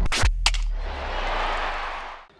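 Electronic intro-sting music for a sports broadcast logo: two sharp hits just after the start, then a hissing whoosh that swells and fades out.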